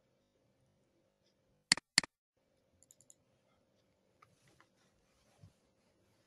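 Two sharp computer mouse clicks about a third of a second apart, about two seconds in. A few faint quick clicks and soft ticks follow.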